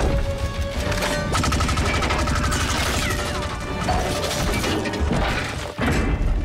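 Movie sound effects of two giant robots fighting: repeated metallic clanks, crashes and whirring mechanism sounds over a music score. Loudness dips briefly just before the end.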